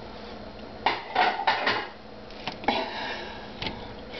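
A table knife and fork clinking and scraping against a metal baking tray while cutting through a cheese-topped pizza cake. There are a few sharp clinks about a second in and a longer metallic scrape near three seconds.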